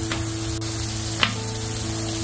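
Corn tortillas sizzling as they shallow-fry in oil on a hot Blackstone flat-top griddle, a steady sizzle with one sharp click about halfway through.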